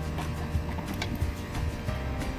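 A steady background hum with unchanging tones, with a few light plastic clicks as a hand works at the latch of an outdoor plastic utility box.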